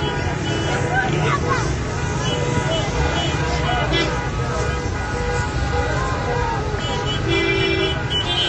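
Street protest crowd shouting amid car traffic, with car horns honking on and off. A longer horn blast comes near the end.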